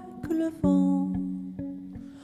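Electric guitar playing a short instrumental phrase between sung lines: a couple of picked notes struck near the start and about half a second in, ringing on and slowly fading.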